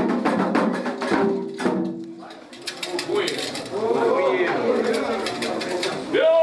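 Candomblé ceremonial percussion of fast drumming and sharp struck beats under singing voices. It breaks off about two seconds in, and voices then carry on with only a few scattered beats.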